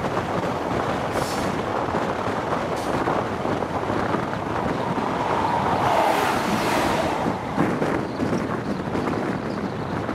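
Wind rushing over the microphone at an open window of a High Speed Train running at speed, with the train's running noise under it. About five seconds in, an oncoming train passes close alongside with a swelling whoosh that drops away suddenly a couple of seconds later.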